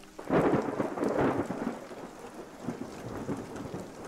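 Thunder rumbling over steady rain. The rumble swells about a third of a second in and slowly dies away.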